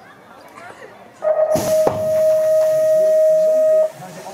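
BMX start gate. A steady electronic start tone sounds for about two and a half seconds, and a loud clank comes soon after it begins as the gate drops, followed by a second knock and a hiss of noise.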